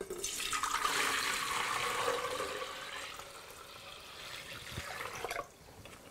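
Liquid poured from a plastic jug into a stainless-steel pot of plant material: a steady splashing pour that starts at once and tapers off over about five seconds.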